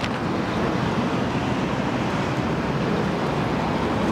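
Strong wind buffeting the microphone: a loud, steady rumbling rush.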